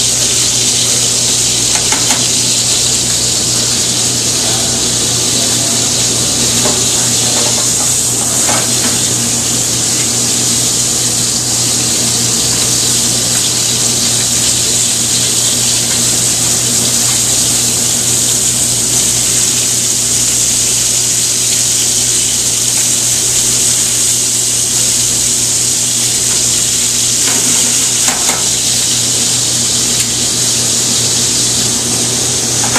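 Scallops sizzling in hot oil in a sauté pan on a gas range, a steady hiss, with a few light taps of metal tongs against the pan as they are turned. A steady low hum runs underneath.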